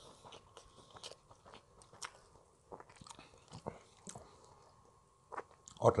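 A person eating yellow rice and fried noodles by hand and chewing with the mouth close to the microphone, heard as scattered short wet clicks and crunches.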